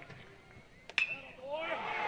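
An aluminum college baseball bat strikes the ball about a second in, a sharp ping with a short ring. This is the contact that sends up a high fly ball. Faint crowd voices rise after it.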